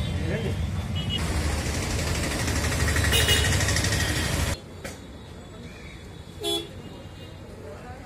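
Street traffic noise with vehicle horns: loud and dense for the first half, then dropping suddenly to quieter street sound, with one short horn toot about two seconds later.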